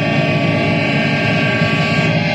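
Saxophone played through effects pedals: a dense, steady drone of many held tones layered together, with a noisy edge and a strong low hum.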